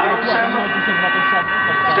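Race commentary in Czech through a public-address loudspeaker, pausing and resuming, with several steady high tones running underneath.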